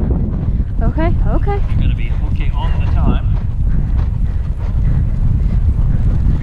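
Wind buffeting a helmet-camera microphone as a horse travels over grass, with its hoofbeats beneath and brief snatches of voice about one and three seconds in.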